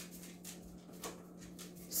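Quiet room tone with a faint steady hum and a soft tap about a second in.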